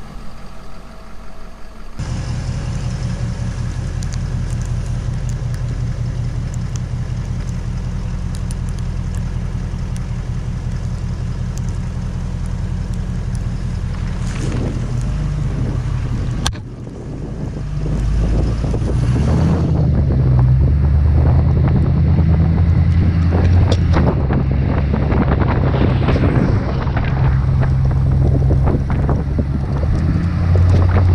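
Ford 6.7 Powerstroke diesel pickup engine running steadily at idle. After a brief dip a little past halfway it runs louder as the truck drives off, with wind buffeting the microphone.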